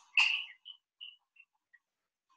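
Gas bubbling out of the end of a glass delivery tube into a water trough: one louder bubble just after the start, then small faint pops about three a second. The bubbles are mainly air displaced from the heated apparatus.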